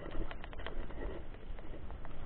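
Mountain bike rolling over a rough, stony dirt road: irregular clicks and rattles from the bike over a steady low rumble.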